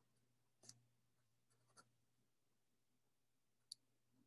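Near silence, with a few faint ticks of a pen writing out an equation.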